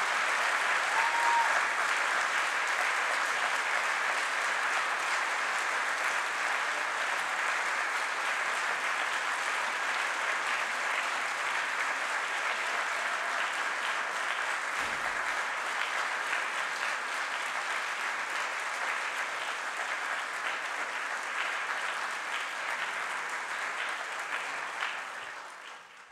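Large audience applauding steadily, fading out near the end.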